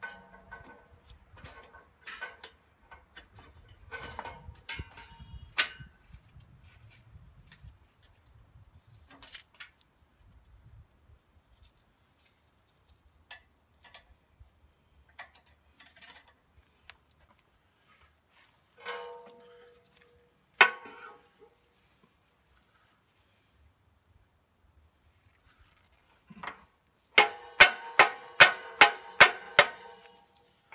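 Metallic clicks and clinks of field-style hydraulic quick couplers being handled on a tractor loader, with one hard knock about two-thirds through. Near the end comes a fast run of about ten sharp, ringing metal knocks, about three a second, as a hose tip is pushed again and again at a coupler that trapped hydraulic pressure keeps locked.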